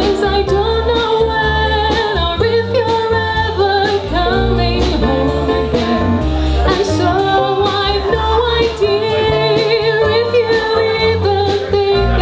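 Live jazz-funk band: a woman singing into a microphone over electric bass, drum kit and keyboard, with a steady drum beat.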